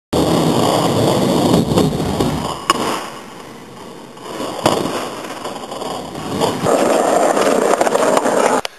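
Skateboard wheels rolling on concrete pavement, with a sharp clack of the board about two and a half seconds in and a hard smack of the board landing a little past the middle. The rolling rumble starts up again near the end.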